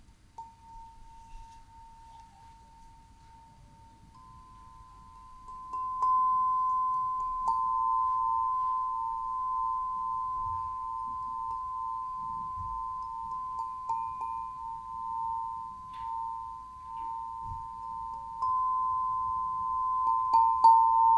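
A hand-held set of tuned metal chime tubes struck with a mallet, a tap every couple of seconds. Two close ringing tones hold on and beat against each other. It is soft for the first few seconds and much louder from about six seconds in.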